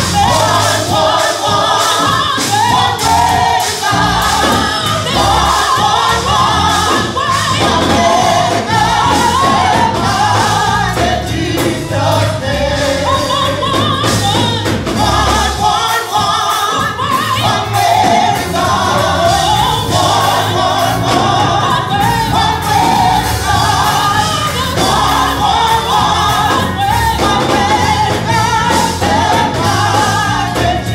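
Live gospel singing by a small group of singers on microphones, over an instrumental backing with a steady beat.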